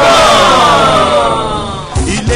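A man's voice holding one long, loud cry or sung note that slowly falls in pitch and fades away near the end.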